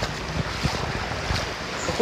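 Steady wash of water noise from a flooded street, with wind rumbling on the phone's microphone.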